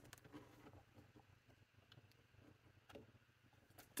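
Near silence, with a few faint ticks from a board-book page being turned by hand.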